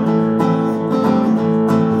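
Acoustic guitar strummed, its chords ringing on between a few strokes, as an instrumental gap between sung lines of a folk song.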